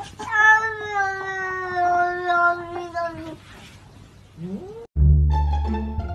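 A cat's long, drawn-out meow held for about three seconds, slowly sinking a little in pitch, followed by a short rising call. About five seconds in it cuts off and louder music with plucked strings and a heavy bass takes over.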